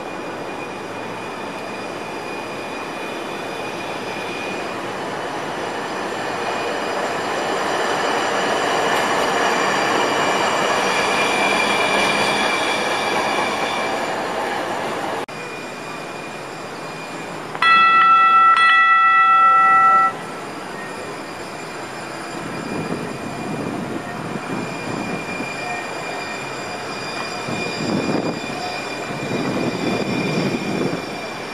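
A Tide light-rail car (a Siemens S70 tram) running on street track, its rolling noise swelling as it approaches, with faint high squealing tones over it. Partway through, the tram's horn sounds once for about two and a half seconds, and it is the loudest sound. The tram then passes close by with a low, uneven rumble that grows near the end.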